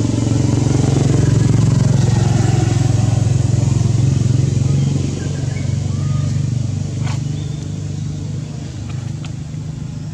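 A motor engine running steadily, loudest in the first half and easing off after about five seconds. A single sharp click comes about seven seconds in.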